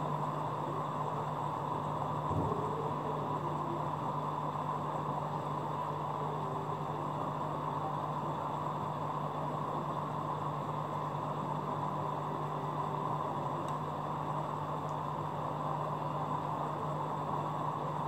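Aquarium pump running: a steady low hum under an even hiss, with one faint brief sound about two and a half seconds in.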